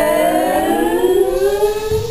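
An ensemble of singers holding a chord whose voices glide slowly upward in pitch together, breaking off near the end.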